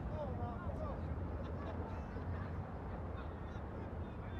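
Faint, distant shouts of players on an outdoor football pitch over a steady low rumble.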